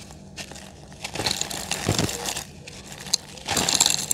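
A dry, reused pure-cement chunk being crumbled by hand over a cement pot, giving a gritty crunching and crackling. It comes in two bursts: a long one about a second in, then a sharp snap, then a louder burst near the end.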